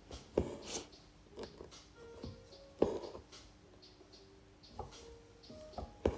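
A needle popping through taut fabric in an embroidery hoop and two strands of embroidery thread being drawn through after it: several sharp taps and short rasps, the loudest about three seconds in. Faint background music plays underneath.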